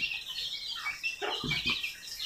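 Chickens clucking, with short bird chirps mixed in.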